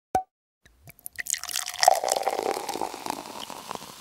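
Water-drop sound effect over an intro title card: a single drip, then from about a second in a rapid run of drips and plops that peaks and then fades.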